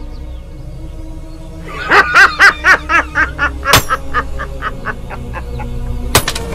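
A man laughing heartily in a run of quick bursts that trail off, over a low, steady film-score drone.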